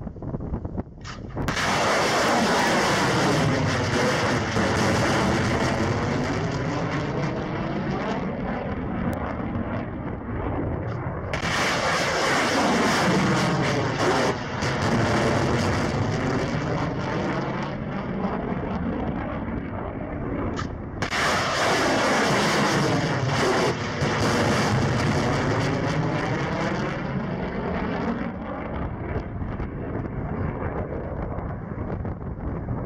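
Three missile launches about ten seconds apart, each a sudden loud rocket-motor roar that fades over several seconds as the missile climbs away.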